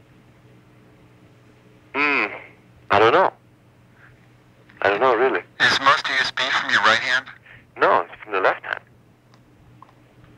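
A man's voice over a telephone line on an old cassette recording, in several short separate bursts, with a steady low hum beneath.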